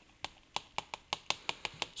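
Chalk tapping and clicking against a chalkboard as words are written in quick strokes, about five sharp ticks a second.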